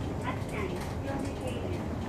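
City route bus's diesel engine running with a steady low hum as the bus moves off and turns, with a voice over it.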